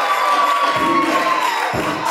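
A crowd cheering and shouting over loud dance-battle music. Under it a deep beat thumps about once a second, and a long held note falls away near the end.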